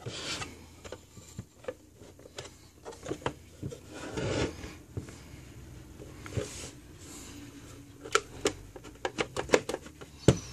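Hands working at a plastic oscilloscope case: plastic rubbing and scraping with scattered clicks and knocks as the unit is gripped and turned over on a wooden bench, then a quick run of sharp clicks near the end.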